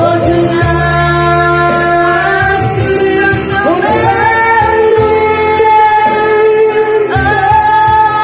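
A man singing karaoke into a microphone over a backing track, holding long notes.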